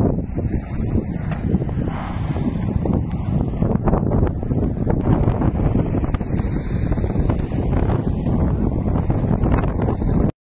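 Wind buffeting the microphone: a loud, rough, uneven rumble throughout.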